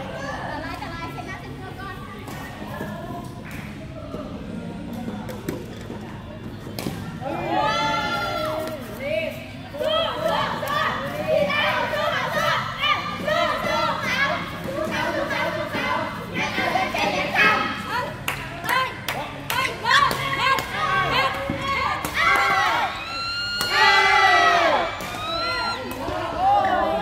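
Badminton play in a large hall: repeated sharp cracks of rackets hitting the shuttlecock, mixed with players' shouts and chatter from the courts.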